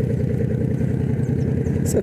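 Motorcycle engine running steadily while the bike rides along at low speed.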